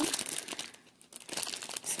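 Clear plastic zip-top bag crinkling as hands squeeze and turn a lump of sticky homemade slime inside it. The crackling comes in two spells, with a short lull about a second in.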